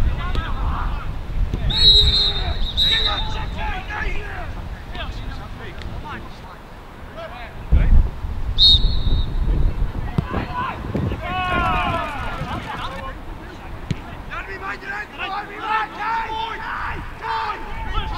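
A referee's whistle is blown twice in quick succession about two seconds in, then once more briefly about nine seconds in. Wind rumbles on the microphone throughout, and players shout on the pitch.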